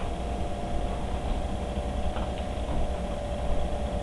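A steady mechanical hum: a low drone with a held mid-pitched tone over it, and a few faint taps.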